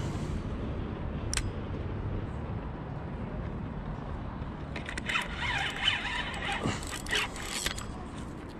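Spinning reel being cranked, a rasping whir that starts about five seconds in and lasts nearly three seconds, over a steady low rumble, with a single click a little over a second in.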